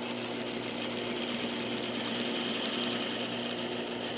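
Sewing machine stitching a straight seam through cloth at an even speed, with a rapid, steady ticking of the needle mechanism.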